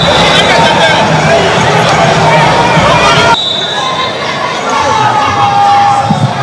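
A football crowd shouting and cheering, many voices at once, with a high whistle tone at the start. A little over three seconds in the din changes abruptly to a thinner crowd noise with a steady horn-like tone.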